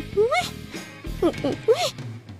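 A woman's voice in short, high, swooping exclamations, over quiet background music.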